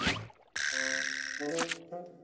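Cartoon sound effects: a quick swish at the start, then a held, buzzy chord-like sound, cut by a second sharp swish about one and a half seconds in.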